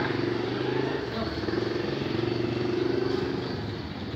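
A vehicle engine running steadily with a low hum, fading near the end.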